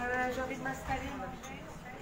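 Indistinct voices of people talking nearby, one higher, woman-like voice clearest in the first half second.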